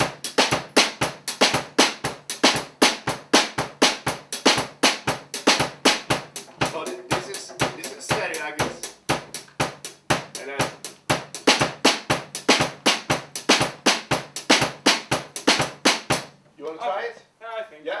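Acoustic drum kit played with sticks: a steady, rhythmic groove of snare, bass drum and cymbals, several strokes a second, stopping suddenly about two seconds before the end.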